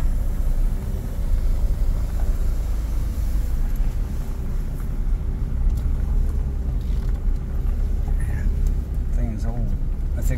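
Steady low rumble of a vehicle driving slowly on a gravel road, heard from inside the cabin, with a faint steady hum running under it.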